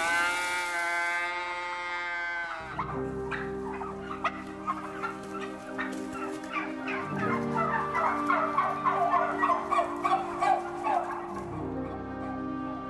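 A flock of domestic turkeys calling and gobbling in short chirps, after one long drawn-out cry lasting about two and a half seconds at the start. Soft sustained music notes run underneath.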